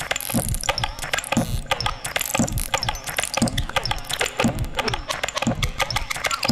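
Dense, rattling clicks like ratcheting gears, over a low thud about once a second: a mechanical-sounding percussive rhythm.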